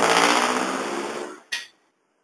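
A motor vehicle engine, loud at first and fading away over about a second and a half, followed by a brief burst of noise.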